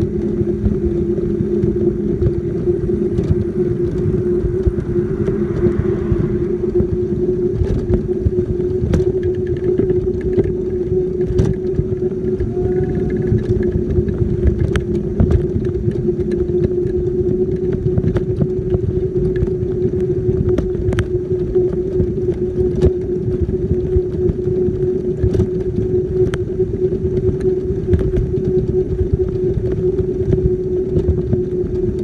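Motorized wheelchair running at speed: a steady motor whine holding one pitch over a low rumble of wheels on the road, with scattered light clicks and rattles.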